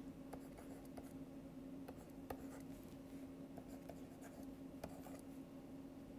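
Faint, irregular taps and scratches of a stylus writing letters on a drawing tablet, over a steady low electrical hum.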